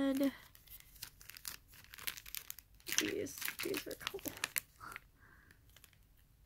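Crisp plastic packaging crinkling as it is handled, a dense run of sharp crackles from about half a second in until near the end.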